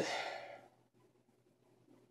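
A man's breathy sigh at the start, fading out within about half a second, followed by near-silent room tone.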